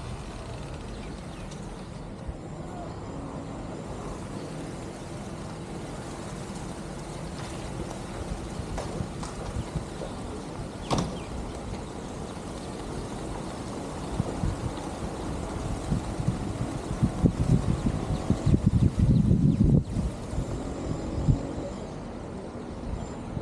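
Outdoor ambience: wind buffeting the phone's microphone over a low steady rumble, with the gusts growing heavier and more frequent in the last third. One sharp click about halfway through.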